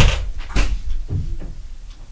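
A sharp indoor bang at the very start, then a second, lighter knock about half a second later and a few dull thuds around a second in, like a door or cupboard banging shut.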